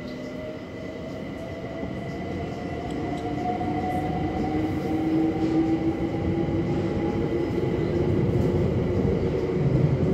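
Inside a London Overground Class 378 electric train as it accelerates: the traction motor whine climbs slowly in pitch while the rumble of wheels on track grows steadily louder, over a steady high whine.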